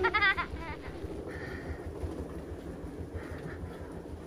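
A short wavering vocal sound right at the start, then a steady low rumble of a small wheeled suitcase rolling along hallway carpet.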